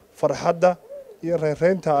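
A man speaking into a handheld microphone.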